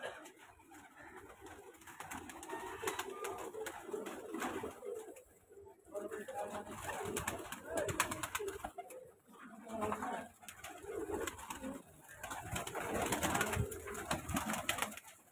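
A loft full of domestic pigeons cooing, many low, repeated coos overlapping throughout, with scattered sharp flicks and claps of wings as birds fly up inside the mesh cage.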